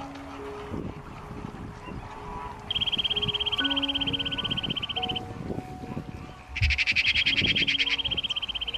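Soft background music of held low notes, with two rapid, high-pitched trilling calls: one about three seconds in lasting some two seconds, and a louder one near the end.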